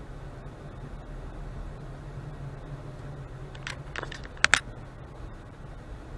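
Steady low hum of a car's engine and road noise heard inside the cabin at a slow crawl, with a brief cluster of sharp clicks and rattles about four seconds in, the loudest two in quick succession.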